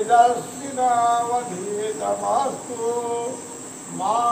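Melodic chanting of a mantra in long held notes that glide from one pitch to the next, with brief dips between phrases. A steady high cricket drone runs underneath.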